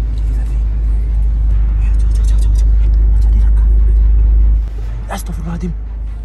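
A loud, steady deep rumble with faint voices over it, which drops off suddenly a little before the end, followed by a man's voice.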